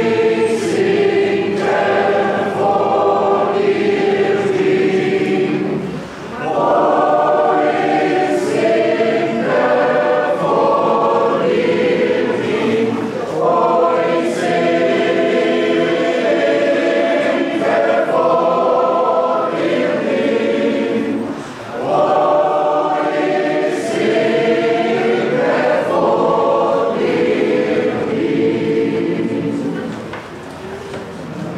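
Large mixed choir of men's and women's voices singing a sustained hymn-like piece in long phrases, with brief breaks between phrases about six seconds in and again at about twenty-two seconds.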